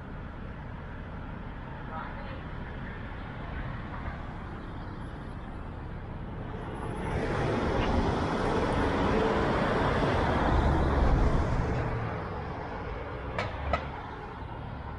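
City street traffic with a steady low rumble; about halfway through, a passing vehicle's tyre and engine noise swells for several seconds and then fades. A few sharp clicks come near the end.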